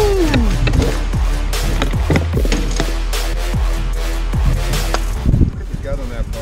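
Electronic trap music with a deep, steady bass and a regular beat, dropping in level near the end.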